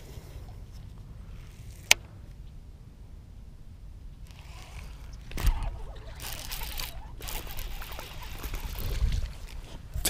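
Wind rumbling on the camera microphone, with one sharp click about two seconds in. From about five and a half seconds, a thump and then rustling and rod-and-reel handling noise as a small bass is hooked and swung in on a baitcasting outfit.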